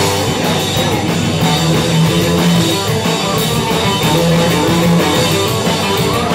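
Rock band playing live: guitar over bass and drum kit in an instrumental stretch of a song, with no singing.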